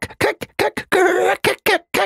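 A man's voice imitating a squirrel scolding: a rapid run of short, sharp chattering calls, about four a second, with one longer call about a second in.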